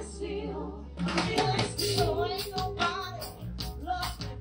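Female vocal group singing live into microphones with a backing band of drums, keyboard and electric bass, amplified through the stage speakers.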